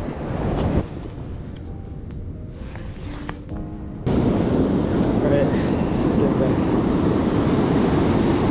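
Ocean surf washing in, with wind buffeting the microphone; after a quieter first half the rush of water and wind comes in suddenly about halfway through and stays loud.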